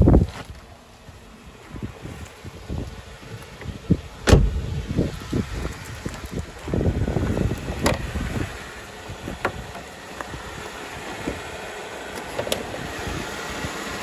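Sharp clunks and clicks from the body of a 2016 Jeep Wrangler as its hood is released and raised, the loudest a hard knock about four seconds in. Scuffing and shuffling sounds come between the knocks.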